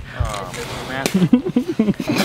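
Laughter at the start, then people talking.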